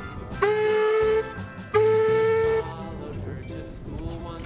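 Steam ploughing engine's whistle blown twice, each blast a little under a second, holding one pitch after a quick rise at the start. The blasts come as the cable plough begins to move.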